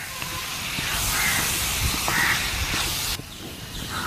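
Beef frying in a wok, a steady high sizzle that stops abruptly a little after three seconds in, with a wooden spatula scraping as the meat is stirred.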